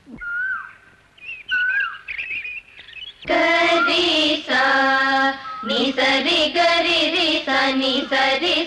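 A few faint, short, high gliding notes, then from about three seconds in a voice singing long, held notes as a film song begins.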